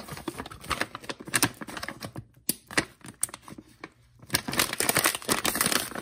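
Plastic packaging pouch crinkling in the hands as an inner bag is pushed back into it, in quick irregular crackles that thin out and go quieter for a stretch in the middle.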